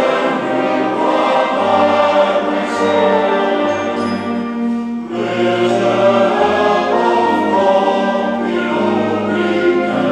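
Male voice choir singing with a concert wind band of brass and woodwinds accompanying. There is a brief drop between phrases about five seconds in, then choir and band carry on.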